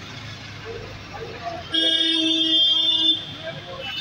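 A vehicle horn gives one steady blast about a second and a half long, starting a little before the middle, over background street noise.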